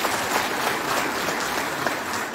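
Audience applauding: many hands clapping together at a steady level.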